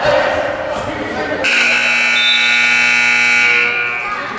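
Gym match-clock buzzer sounding one long, steady blast of about two seconds, starting about a second and a half in and cutting off just before the end.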